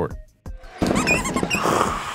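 Basketball game sound effects triggered from an electronic keyboard: short high sneaker squeaks over crowd noise, starting a little under a second in.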